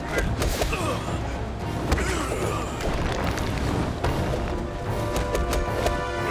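Dramatic action score under cartoon fight sound effects: quick hits and thuds of hand-to-hand blows, with a sharp impact about two seconds in and a flurry of hits near the end.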